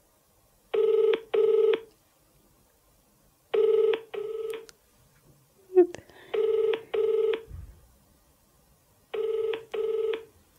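Phone ringback tone played through a handset's speaker: an outgoing call ringing with no answer yet, in pairs of short buzzing rings, four double rings about every three seconds. A brief vocal sound falls between the second and third pairs.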